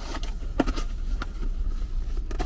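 Packaging being handled: a plastic-wrapped packet and papers shifted about, with several short sharp clicks over a steady low rumble.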